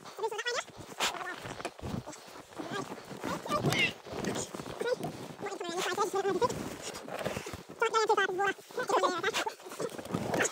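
Short bursts of laughter and strained voices, with snow crunching and clothing rustling as two people heave at a snowmobile bogged in deep powder.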